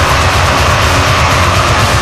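Thrash metal from a demo tape recording: distorted guitars over fast, driving drums in a loud, dense and unbroken wall of sound.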